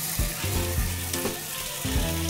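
Fish stock poured into a hot frying pan, sizzling in the pan where the fish was fried.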